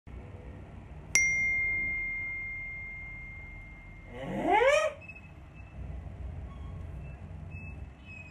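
A single bell-like ding strikes about a second in and rings on as one clear tone, fading slowly over about three seconds. Near the middle a man gives a short vocal sound that rises in pitch.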